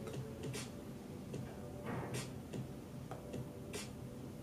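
Faint, sharp ticks or clicks, roughly one to two a second at uneven spacing, over a low steady background hum.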